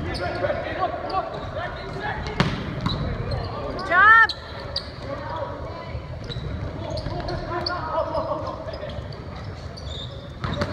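Volleyball rally in an echoing gym: sharp ball hits, the strongest about two and a half seconds in, over players' and spectators' indistinct voices. A brief, loud, high squeal comes just after four seconds.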